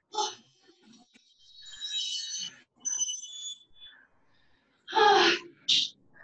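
Hard, effortful breathing of a person mid-workout: gasps and short exhales, some with a thin wheezy whistle, then a loud grunting exhale about five seconds in followed by a short hiss of breath.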